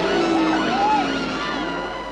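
Horror film soundtrack: several overlapping tones that slide and waver in pitch over a held low tone, the whole dropping in level near the end.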